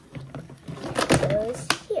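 Hard plastic toy playset pieces clicking and knocking as they are pressed and snapped into place, with a few sharp clicks in the second half.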